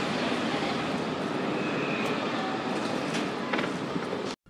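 A steady rushing mechanical roar, even throughout, with a few light knocks on top.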